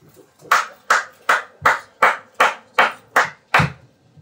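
Rhythmic hand claps: about nine evenly spaced claps, a little under three a second, each ringing briefly in the room.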